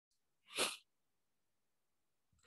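A single short breathy noise from a person, about half a second in, against near silence.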